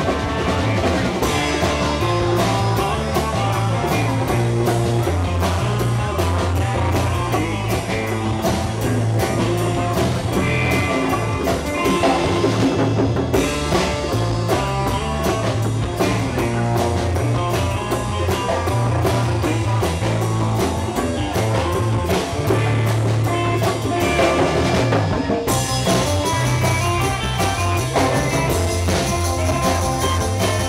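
A live band playing a twangy surf-rock instrumental: electric guitar carrying the tune over a strong bass line, drum kit with busy cymbal strokes, and congas.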